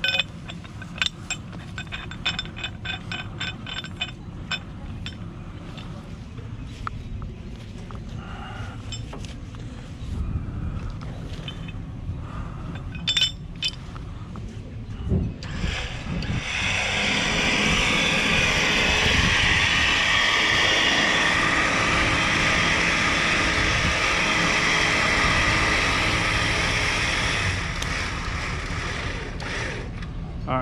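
A steel shackle and recovery strap being handled and rigged, with light metal clinks and scraping. About halfway through, a loud steady rushing noise takes over for about twelve seconds, then eases.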